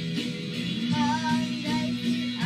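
A boy singing a Thai pop song over instrumental accompaniment, his voice carrying the melody with gliding, held notes.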